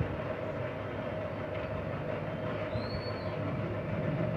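A steady mechanical drone, with a short high whistle-like tone that rises and falls about three quarters of the way in.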